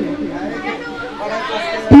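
People chattering in the background, softer than the amplified announcer. A man's voice over the microphone starts again near the end.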